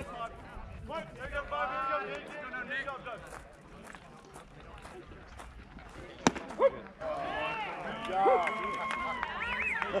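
One sharp crack of a baseball bat hitting the pitched ball, about six seconds in and louder than anything else, followed at once by spectators and players shouting and cheering as the ball is put in play. Scattered voices are heard before the hit.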